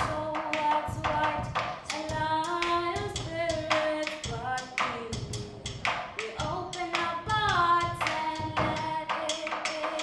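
Teenagers singing a melodic vocal line in sustained, gliding notes, without clear words, over a steady percussive beat of sharp strikes several times a second.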